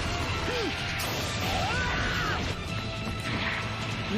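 Animated fight sound effects: crashing impacts with background music, with a sharp hit about a second in.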